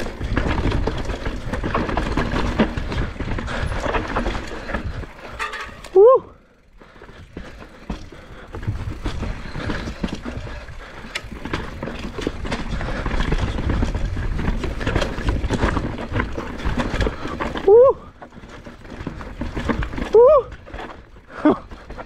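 Mountain bike riding fast down a rough, rocky and rooty dirt trail: tyres rumbling over the ground, with the chain and frame rattling and clattering over the bumps. Three short, loud sounds rise in pitch, about six seconds in and twice near the end.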